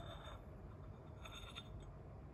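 Faint dry rustle and scrape of loose yerba mate tipped from a small spoon into a ceramic calabash, in two short spells.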